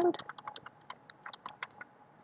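Typing on a computer keyboard: a quick, irregular run of key clicks as code is entered.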